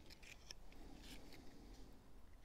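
Near silence with a few faint, short clicks and lip smacks from puffing on a tobacco pipe.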